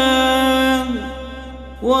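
A solo voice chanting an Arabic supplication in a drawn-out melodic style: a long held note fades out about a second in, and after a short breath the next phrase begins near the end.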